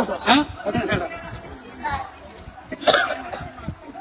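A few short bursts of people's voices, brief utterances with quieter gaps between them.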